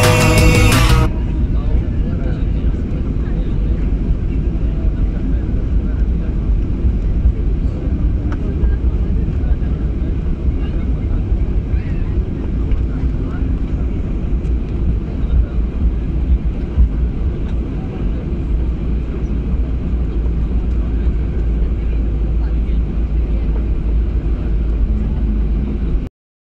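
Steady low rumble inside the cabin of a Ryanair Boeing 737 rolling along a wet runway after landing: engine noise and wheel rumble heard through the fuselage. Music plays for about the first second and then stops.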